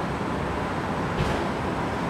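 Steady background noise, a low rumble with a thin hiss over it, and a faint brief rustle a little past halfway.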